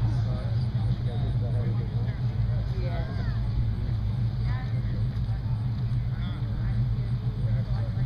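Steady low rumble of an idling car engine, with faint voices talking over it.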